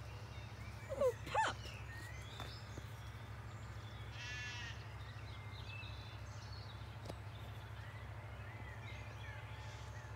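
Zwartbles sheep bleating: two short calls about a second in, then a higher, quavering bleat around four seconds in, over a low steady hum.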